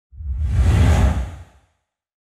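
Whoosh sound effect of an animated TV station logo ident: a single swelling rush of noise over a deep rumble that fades away after about a second and a half.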